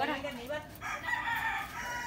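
A rooster crowing once: one long, steady call starting a little under a second in and lasting about a second.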